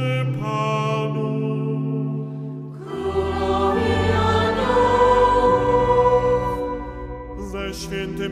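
Choir singing long held chords of a Catholic chant, moving about three seconds in to a fuller, louder chord with deep bass voices, which eases off near the end.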